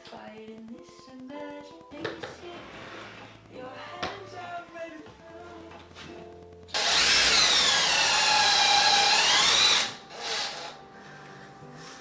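Cordless drill running for about three seconds near the middle, loud over the rest, its motor whine dropping in pitch and rising again, then stopping abruptly. Background music with singing plays throughout.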